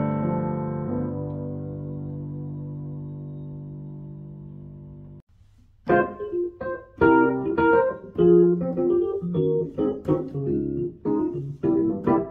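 Yamaha Arius digital piano: a held chord dying away slowly for about five seconds, cut off abruptly. After a short gap, a Yamaha YDP-145 playing its E. Piano 1 electric piano voice in short, struck chords and notes.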